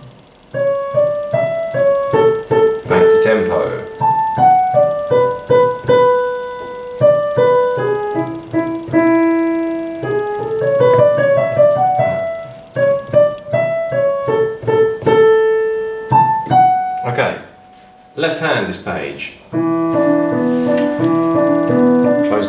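Roland digital piano played slowly, one note at a time with small gaps, in a hesitant first read-through of a right-hand melody. Near the end a few lower notes are held together.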